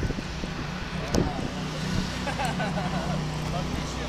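Indistinct voices of people nearby over a steady low hum, with a brief knock a little over a second in.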